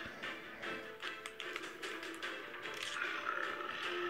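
Background music from a hamster-maze video playing on a laptop's speakers, with many short clicks and taps scattered through it.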